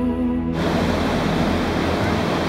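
A song's music gives way, about half a second in, to the steady rush of ocean surf breaking on the beach.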